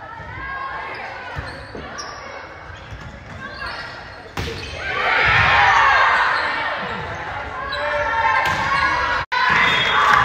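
Volleyball rally in a school gymnasium: sharp hits of the ball, one loud smack about four seconds in. A swell of spectators and players shouting follows it, echoing in the hall.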